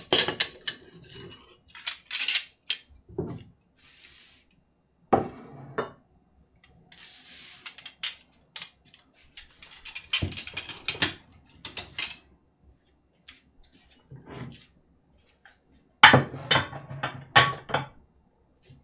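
Stoneware utensils clinking against a stoneware utensil jar and each other as they are handled, with scattered knocks through the middle. Near the end comes a louder run of ceramic dishes clattering as pieces are moved on the counter.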